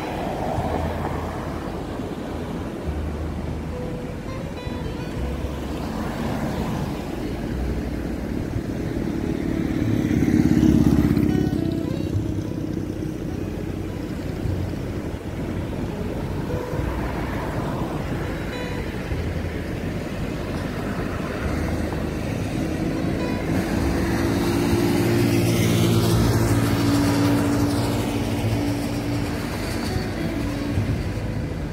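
Road and traffic noise heard from a moving car, with a passing vehicle swelling loudest about ten seconds in and another engine growing louder near the end, under background music.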